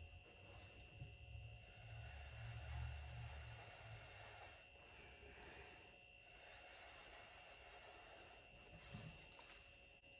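Near silence, with a few faint, low puffs of breath blown through a drinking straw onto wet pour paint, from about one to three and a half seconds in.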